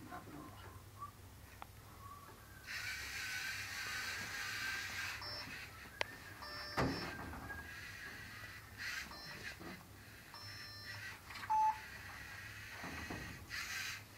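Lego Mindstorms NXT robot running on its own: a soft whir from its servo motors and plastic gears, broken by a few short electronic beeps, the clearest one near the end.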